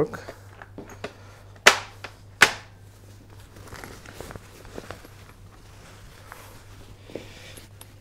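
Two sharp clicks just under a second apart, then faint small clicks and rustling as the Bugaboo Bee 6 stroller's canopy is handled.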